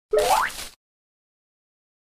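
A short cartoon sound effect: one quick swoop rising in pitch, about half a second long, right at the start.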